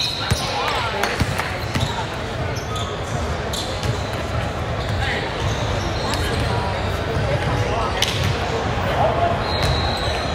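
Basketball gym ambience: a murmur of spectator and player voices echoing in a large hall, with scattered basketball bounces and knocks on the hardwood court and a brief high-pitched tone near the end.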